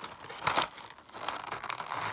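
Clear plastic blister tray crinkling as it is picked up and handled, in irregular rustles, loudest about half a second in and near the end.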